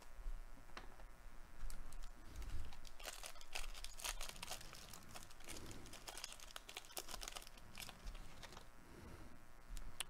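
A trading card pack's plastic wrapper crinkling and tearing as it is opened by hand, with quick crackles and clicks. The crackling is densest in the first half and thins out toward the end, alongside the rustle of cards being handled.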